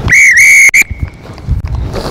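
Referee's whistle on a rugby pitch: one loud, long blast of a little under a second, with a brief dip in pitch near its start.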